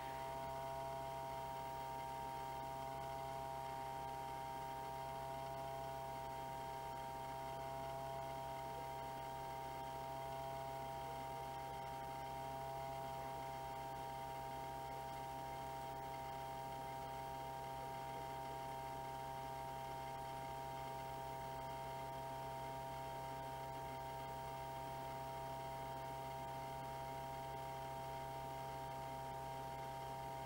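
Steady electrical or motor hum with several steady whining tones over it, unchanging throughout.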